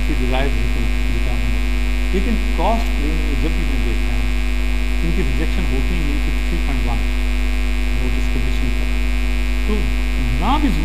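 Loud, steady electrical mains hum in the recording, with a man's lecturing voice faintly audible over it at intervals.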